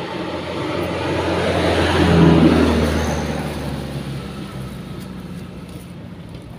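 A truck driving past on the road: low engine hum and tyre noise swelling to its loudest about two seconds in, then fading away.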